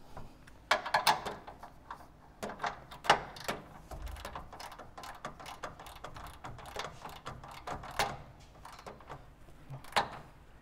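Ratchet and socket tightening the frame-mount bolts on a caster correction plate: irregular runs of clicking and metal clunks. The sharpest is about three seconds in.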